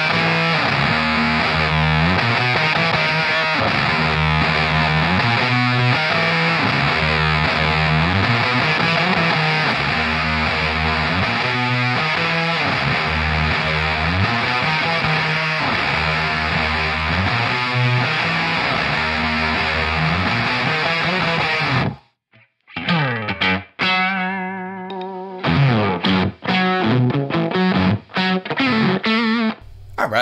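Electric guitar through the Screwed Circuitz Irvine's Fuzz pedal into a Suhr SL68 amp set for classic crunch, playing dense, sustained fuzz-distorted chords that change about every second. About 22 seconds in it stops abruptly, then comes back as a sparser, lighter part with short breaks.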